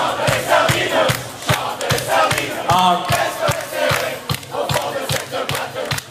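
Dance-hall crowd singing and shouting along together over a live band's steady, fast beat.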